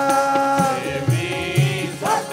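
Sikh kirtan: harmonium and singing voices holding long notes, with low tabla strokes beneath.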